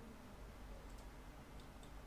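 Near silence: faint room tone with a low hum and a few faint clicks.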